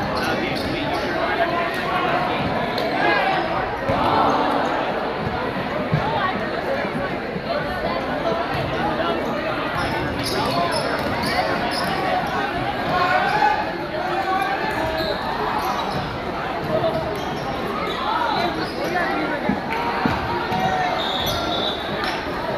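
Basketball bouncing on a hardwood gym floor during play, over steady crowd chatter echoing in a large gymnasium.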